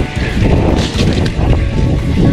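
A mountain bike rolling over a dirt trail: steady tyre rumble and rattling knocks from the bike, with wind on the body-mounted microphone, under background music.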